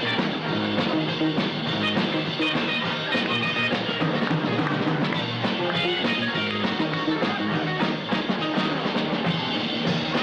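Rock dance music with a steady drum beat and guitar, playing for dancers.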